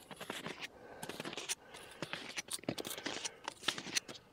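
Quiet, irregular crunches and scrapes of packed snow under snowshoes as the wearer shifts and steps.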